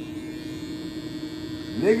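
Corded electric hair clippers running with a steady hum.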